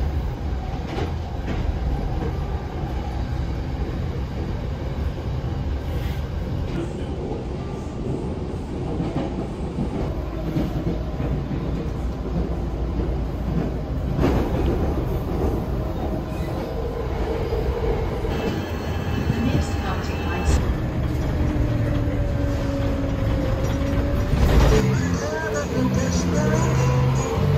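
Steady rumble and rattle of an electric commuter train's wheels on the track, heard from inside the carriage. A short whine comes in late, and a sharp knock sounds just before the end.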